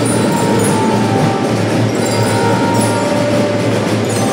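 Children's marching drum band playing: snare and bass drums with sustained melody notes held over them.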